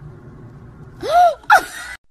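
Two short, high-pitched vocal cries about a second in: the first arches up and down in pitch, the second sweeps sharply up.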